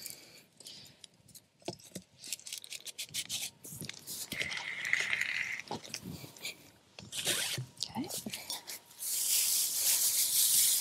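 Loose dry hay rustling and crunching as it is packed down into an ABS-pipe windrow moisture sampler with a plastic plunger, with short scrapes and knocks of the plunger in the tube. The hay is being compressed dense enough for a bale moisture probe to read it.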